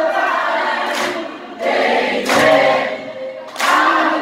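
Many voices singing together over the band's music at a live concert, heard from among the audience. The singing pauses briefly between phrases, about a second and a half in and again near the end.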